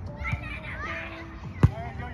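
A volleyball struck once with a sharp slap about three-quarters of the way in, the loudest sound here, amid players' shouted calls.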